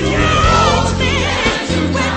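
Gospel worship song: several voices singing a melody over steady instrumental backing with a sustained bass.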